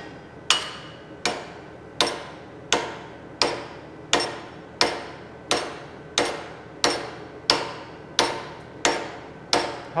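Hammer striking a high-carbon steel file welded to mild steel and clamped in a bench vise, in about fourteen evenly paced blows, each ringing briefly. This is a hammer test, trying to beat the file off to prove the weld.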